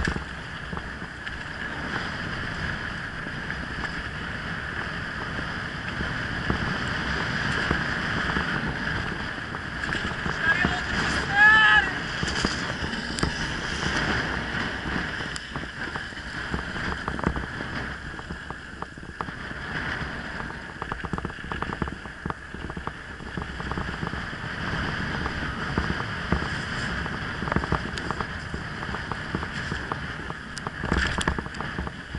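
Wind buffeting the camera microphone over the rumble and rattle of a mountain bike rolling fast on a dirt road, with many short knocks over bumps in the second half. About a third of the way in, a brief high-pitched squeal stands out as the loudest sound.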